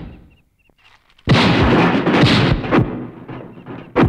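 Dubbed fight sound effects: a loud crashing impact a little over a second in that stays loud for about a second and a half before fading, with a sharp hit right at the end.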